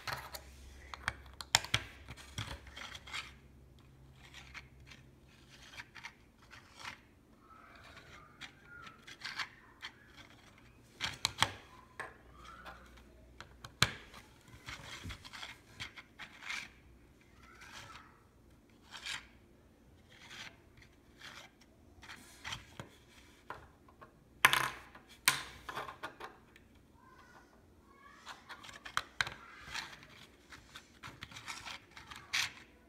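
Lego minifigures and plastic bricks being handled: irregular sharp clicks and taps of plastic on plastic and on a wooden tabletop, with soft rubbing between, the loudest cluster of clicks late on.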